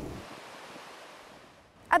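Ocean surf washing onto a sandy beach: an even rushing noise that fades steadily away.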